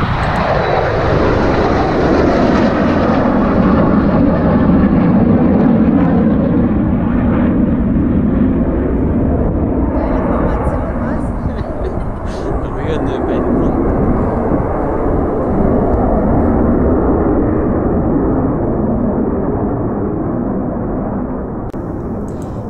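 Two Eurofighter Typhoon fighter jets on a low formation flypast: loud jet engine roar whose pitch falls steeply in the first couple of seconds as they pass, then a steady jet rumble that eases off slightly near the end.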